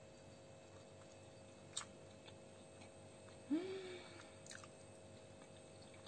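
Faint, quiet chewing of a dolma (a stuffed grape-leaf roll), with a few soft mouth clicks and one short closed-mouth hum of "mm" a little past the middle.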